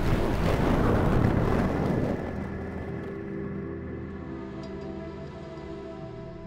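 Slow background music of held notes, with a loud rush of noise over it that fades out about two seconds in.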